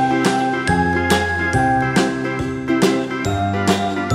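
Background music with a steady beat of about two beats a second over held bass notes and a changing melody.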